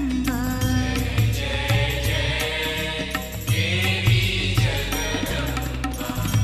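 Sai bhajan, Hindu devotional song to the Goddess, playing with a steady drum beat under the melody.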